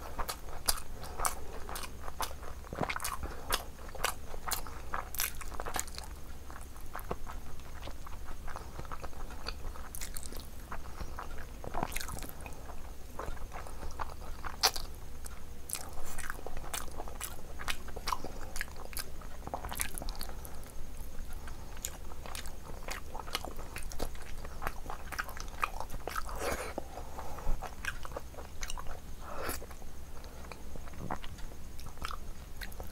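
Close-up eating sounds of a person chewing rice, curry and meat pieces eaten by hand: irregular mouth clicks and smacks all the way through.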